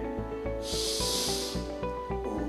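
A deep breath drawn in through the nose: a hiss of about a second that starts just over half a second in. Soft background music with a steady low pulse plays under it.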